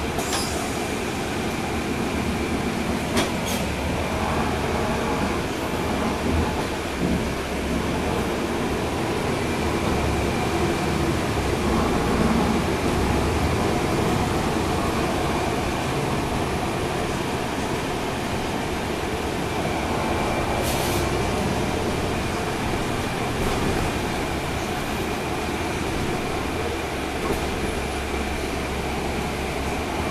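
Interior of a 2012 NABI 40-SFW transit bus under way, heard from the rear seats: the rear-mounted Cummins ISL9 diesel runs steadily under road noise, with a thin steady whine above it. There is a sharp rattle-click a few seconds in and another about two-thirds of the way through.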